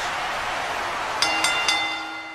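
A boxing-style ring bell struck three times in quick succession, each strike ringing on, signalling the start of the match. It sounds over a steady rushing noise.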